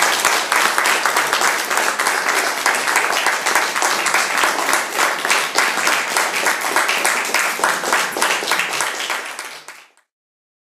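Audience applauding a finished song: many hands clapping densely, fading out near the end.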